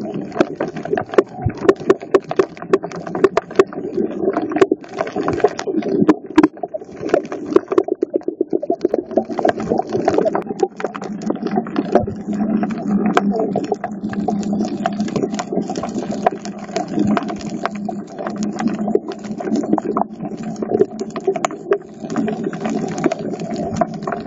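Underwater sound picked up by a submerged phone: a steady, muffled low rumble of moving water with many irregular sharp clicks and crackles.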